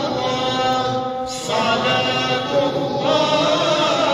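Unaccompanied religious chanting by men's voices, long held melodic lines with ornamented wavering, and a short break about a second and a half in.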